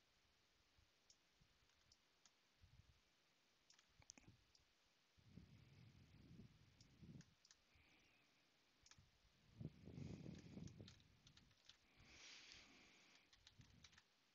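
Near silence with faint, scattered computer mouse clicks, a handful spread over the stretch, and a few soft low rustles between them.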